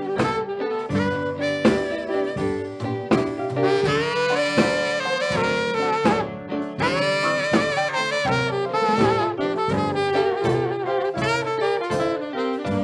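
Instrumental break in a blues song: a lead horn plays a solo with vibrato over a band backing with a steady beat.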